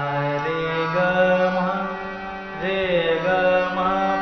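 Harmonium reeds sounding as an ascending and descending four-note alankar, a sargam practice pattern, is played on the keys. Steady sustained tones step from note to note about every half second to a second.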